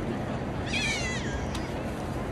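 A short, high-pitched cry, about half a second long, that falls in pitch about a second in, over a steady background of outdoor crowd and city noise.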